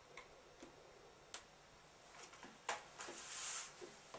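Faint mouth sounds of a piece of dark chocolate being chewed: a few soft clicks, then a short breathy hiss near the end.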